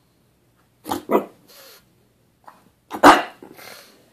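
Pug barking: a quick pair of barks about a second in and a single louder bark near the end, each followed by a breathy huff. These are demand barks at the owner for not throwing the ball.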